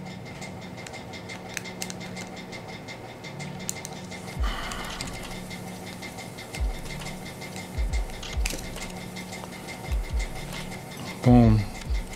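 Faint clicks and rubbing of small plastic parts as a Honda key fob's shell is worked apart by hand, with a short rustle about four and a half seconds in and a few low bumps later, over a steady low hum.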